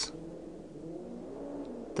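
A faint, steady low drone made of a few held tones.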